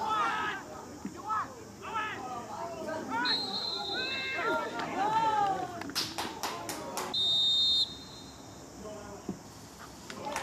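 Shouts from footballers on the pitch, with a referee's whistle blown briefly about three seconds in and again, longer and louder, past the seven-second mark; a quick run of sharp cracks comes just before the second blast.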